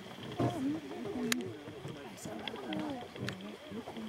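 A few sharp, scattered clicks from a bat detector, which turns the bats' echolocation calls into audible clicks, over indistinct talking of several people.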